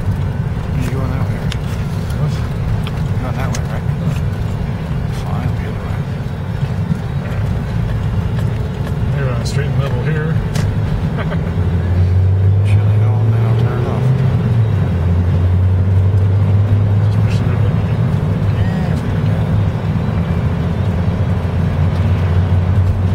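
Car cabin noise while driving on a snow-covered road: a steady low engine and road drone. About halfway through it grows louder and a deep steady hum comes in.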